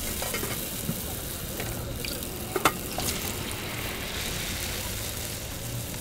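Steady sizzle of food frying at a street food stall, with two sharp clicks near the middle.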